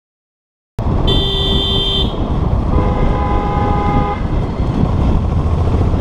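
Two vehicle horn blasts of different pitch over the rumble of wind and engine noise from a moving motorbike. A higher horn sounds for about a second, then a lower horn sounds for about a second and a half.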